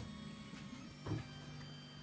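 Reach 3D printer running mid-print, its motors making a faint, steady whine of several fixed pitches, with a brief vocal sound about a second in.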